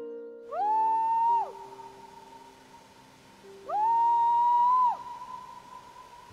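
Background film-score music: two long sliding lead notes, each gliding up, held about a second, then dropping away, over soft sustained low notes.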